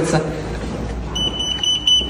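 Electronic card-reader door lock giving one steady, high beep about a second long, starting about a second in, as a card is held to it: the card is not accepted and the door stays locked.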